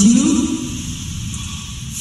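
Electronic music in a break between sections, with no beat: a pitched tone glides upward in the first half-second, then a high hiss slowly fades.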